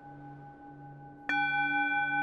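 A singing bowl tuned to D rings on with a slow, wavering beat. It is struck again a little past a second in, and the ring comes back louder and fuller.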